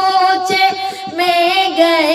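A high solo voice singing an Urdu naat, holding a long wavering note and sliding to a new pitch a little past the middle.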